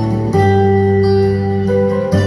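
Instrumental backing music for a sung cover, played through a portable speaker: held, guitar-like chords that change about a third of a second in.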